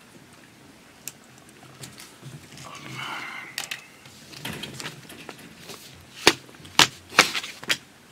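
Sheets of paper rustling as they are handled on a desk, followed in the last two seconds by about four sharp knocks or taps on the desk.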